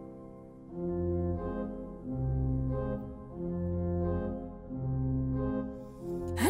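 Instrumental backing music: held keyboard chords over low bass notes. The music starts quietly, then swells in four phrases about every second and a half from under a second in.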